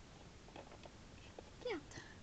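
A child's voice says one short, high "yeah" near the end, falling in pitch, after more than a second of quiet room tone with a few faint ticks.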